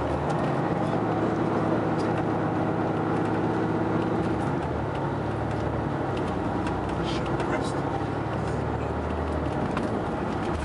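Volvo D13 inline-six diesel engine of a Prevost X345 coach, heard from inside the passenger cabin while the coach is under way: a steady drone, its pitch shifting about halfway through.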